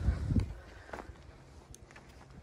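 Footsteps on a dry dirt trail: a few heavy low thumps in the first half second, then fainter scattered steps and small crunches of grit and stones.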